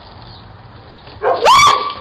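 A single loud cry about a second and a quarter in, sweeping sharply up in pitch and then held for about half a second, with a shorter burst straight after, over faint background hiss.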